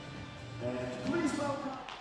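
Music fading out, then a voice calling out for about a second in an echoing arena, and a sharp knock near the end.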